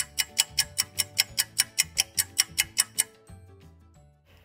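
Ticking-clock sound effect, quick even ticks about five a second over a few held music notes, stopping about three seconds in.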